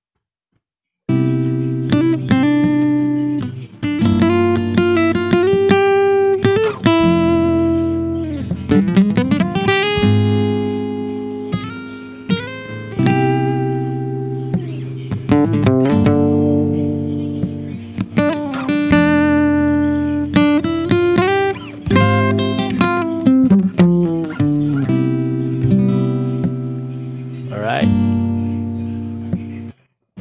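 Steel-string acoustic guitar played solo: the song's adlib lead part, a run of plucked single notes and chords with slides between notes. It starts about a second in and stops just before the end.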